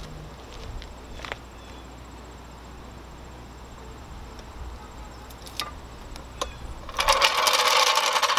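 Wind rumbling on the microphone, with a few faint clicks. About a second before the end comes a loud metallic rattling clatter as the low-profile floor jack is rolled out across the asphalt.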